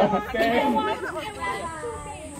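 Several people's voices chattering over one another.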